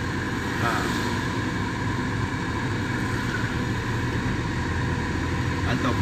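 Steady cabin noise of a small car being driven: the engine running with tyre noise from a wet road, heard from inside the car.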